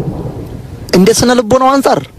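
A voice talking, after about a second of low rumbling noise between phrases.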